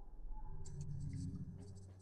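Faint background noise on a video-call audio line: a low steady hum with a few brief soft rustling noises about half a second in and again near the end.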